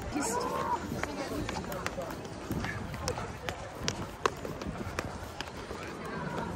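Footsteps on stone steps, an irregular string of sharp taps, with faint voices of people in the background.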